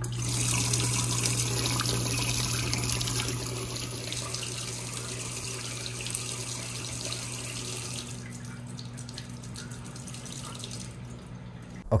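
Dishwasher drain water gushing from the faucet adapter into a stainless steel sink, over a steady low hum. The flow is strongest for the first few seconds, then eases off, and eases again about two-thirds of the way in.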